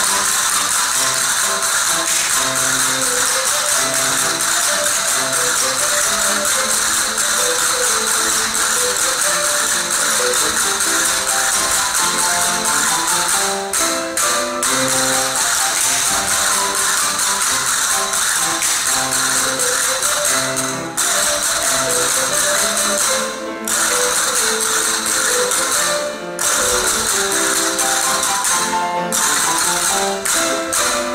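Seguidillas manchegas music with a dense, continuous clatter of castanets over the melody, broken by a few brief pauses.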